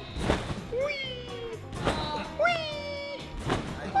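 A trampoline bed thumps under a jumper about every second and a half, each landing followed by a drawn-out gliding "oei" cry. Background music with a steady beat plays under it.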